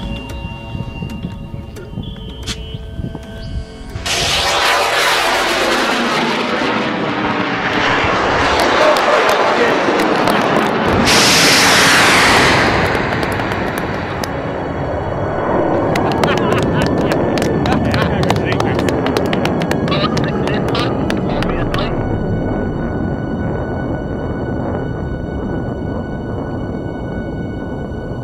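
Rocket motor igniting about four seconds in with a sudden loud rushing noise that builds to its loudest a little before the middle, then slowly fades as the rocket climbs away. People whoop and cheer near the end.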